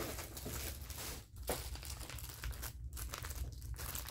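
Packaging crinkling and rustling as hands rummage through a cardboard box and pull out a plastic-wrapped sheet mask, an uneven crackle with two short pauses.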